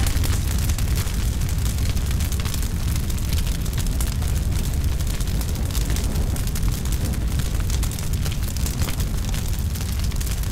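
A large building fire burning: a steady low rumble of flames with continual crackling.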